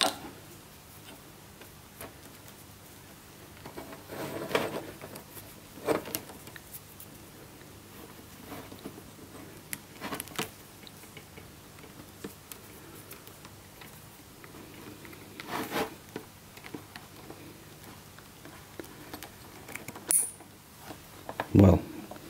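Handling noise of cables and plastic connectors: scattered soft clicks and rustles every few seconds as a security camera's network plug is fitted to a flat network cable by hand.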